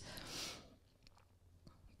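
A woman's soft breath into a handheld microphone, fading out within half a second, then near silence broken by a couple of faint clicks.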